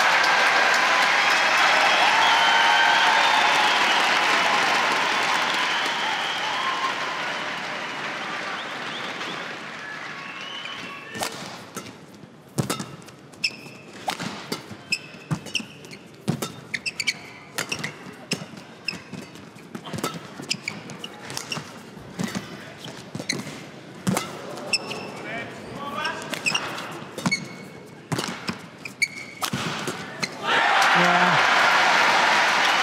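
Arena crowd applauding and cheering, fading away over the first ten seconds or so. Then a badminton rally: quick, irregular sharp racket hits on the shuttlecock, with shoe squeaks and footfalls on the court mat.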